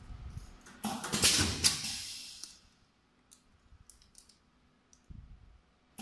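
Semi-automatic pneumatic pouch filling and sealing machine cycling: a loud hiss of air starts about a second in and dies away over about a second and a half. A few light mechanical clicks follow.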